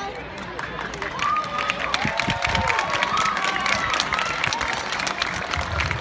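Small audience clapping and calling out, starting about a second in, with voices over the applause.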